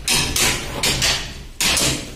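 Repeated hammer blows, one about every half second, each a sharp hit with a short noisy decay.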